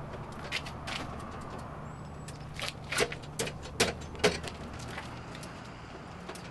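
Footsteps on pavement: short, sharp steps, with a quick run of about four steps near the middle, over a steady low hum.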